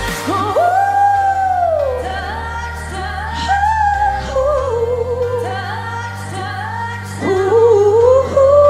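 Pop song with a female lead vocal over sustained synth chords and bass. The singer holds a long note that falls away about two seconds in, then sings a wavering melody that grows louder near the end.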